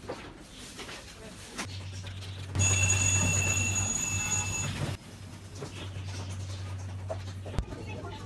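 An electronic alarm tone, several steady high-pitched notes together, sounds loudly for about two seconds starting a little over two and a half seconds in, over a steady low electrical hum. There is a single click near the end.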